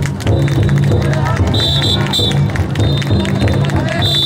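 Taiko drum inside a festival drum float beaten in a steady rhythm, with the bearers chanting and shouting as they heave the float. A shrill high note sounds twice near the middle.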